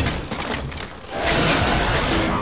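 Film sound effects of a giant snake crashing through plastic crates and warehouse debris: noisy crashing and thuds that ease off about a second in, then swell again.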